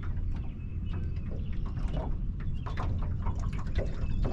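Steady low rumble of wind on the microphone aboard a small aluminium boat, with faint light ticks and splashes of water against the hull.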